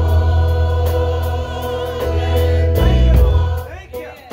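Gospel choir singing over held Korg keyboard chords and a deep bass line. The music dips briefly near the end.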